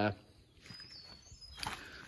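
A man's brief 'uh', then a quiet stretch of faint shuffling with a few light clicks about one and a half seconds in.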